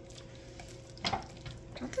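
Silicone spatula stirring thick, creamy shredded chicken and rotini pasta in a ceramic slow-cooker crock: soft, wet stirring with one brief louder sound about a second in.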